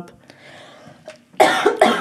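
A person coughs briefly about one and a half seconds in, after a soft breath.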